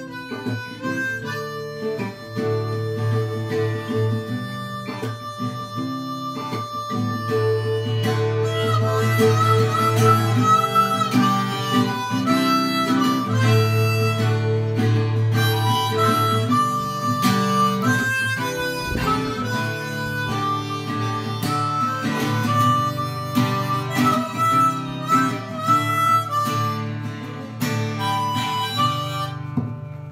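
Harmonica playing a melody over acoustic guitar.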